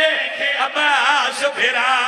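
A man's voice chanting a mourning elegy in a wavering, ornamented tune, amplified through a microphone.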